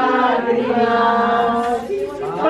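A group of voices singing a slow devotional song together, drawn out on long held notes, as sung while the Christ-child figure is lifted from the nativity scene.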